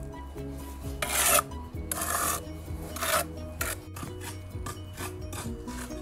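Three scrapes of a hand tool over brick and mortar, about a second apart, over background music of short repeating notes.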